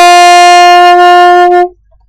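A single melodic instrument holds one long, steady note for about a second and a half, the closing note of a short tune, then cuts off.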